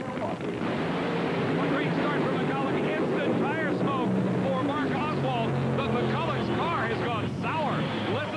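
Two supercharged nitro V8 funny car engines at full throttle down a drag strip, a loud, steady drone that starts about half a second in. One engine sounds like it is only running on about six cylinders.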